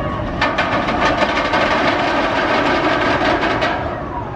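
Steel Eel's Morgan mega coaster train rolling along its steel track, a rapid rattling clatter that starts about half a second in and dies away near the end.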